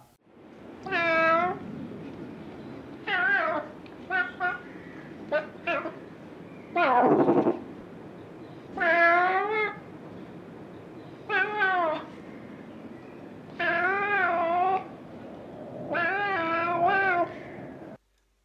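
A cat's drawn-out yowling calls, about nine of them with a wavering pitch, one in the middle sliding steeply downward. The calls are presented as the mating cry of an ocelot.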